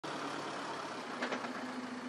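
Parked van of a mobile radiation laboratory running, a steady low hum over a faint even noise.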